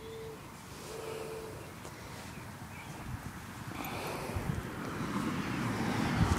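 Faint outdoor ambience with wind on the microphone, growing louder in the second half. A faint steady tone sounds twice in the first second and a half.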